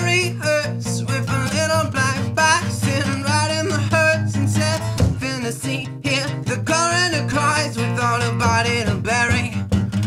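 A folk-punk song played live: acoustic guitar with a steady low note underneath and a man singing over it.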